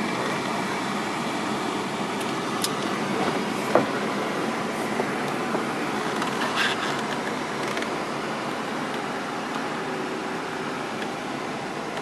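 Steady fan-like running noise inside a car cabin, with a few light clicks and knocks about two and a half, four and six and a half seconds in as the sunroof is opened.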